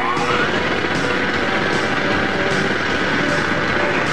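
Electronic sound effect from a TV production logo's soundtrack: a whine rises in pitch about half a second in, then holds as a steady high tone over a loud, dense hiss.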